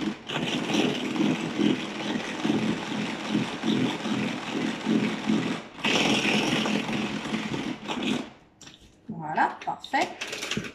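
Tupperware Speedy Chef 2 hand-crank mixer whirring as it is cranked on speed 1, its plastic gears spinning the whisks through batter in the pitcher. The whirring breaks off briefly a little over halfway through, as the crank is turned the other way, and stops about eight seconds in.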